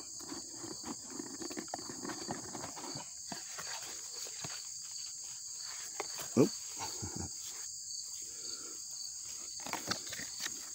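Crickets chirring steadily in a high pitch throughout. Soft rustling and small clicks of a cardboard gift box being handled and its lid lifted come in the first few seconds, and a brief voice-like sound comes about six seconds in.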